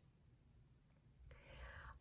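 Near silence: room tone, with a faint breath drawn in during the last second.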